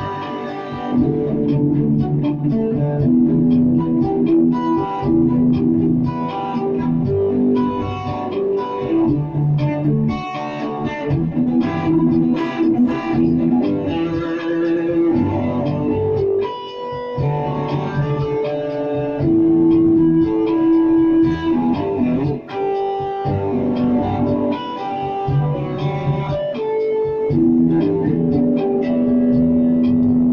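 Ibanez SZ electric guitar played through a Roland Micro Cube amp: a continuous run of single-note lead lines, with a few long sustained notes among them.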